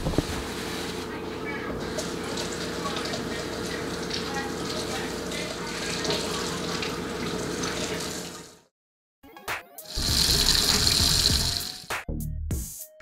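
Kitchen faucet sprayer running water into a stainless steel sink as raw tilapia fillets are rinsed under it, a steady hiss with a faint hum. The water stops suddenly about two-thirds of the way through; after a few clicks a louder hiss follows near the end.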